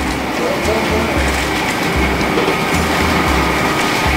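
Busy restaurant counter ambience: background music with a deep bass line under indistinct chatter, over a steady kitchen hum.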